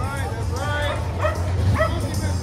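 A dog yipping repeatedly, about four short yips in two seconds, over crowd chatter and a low steady hum.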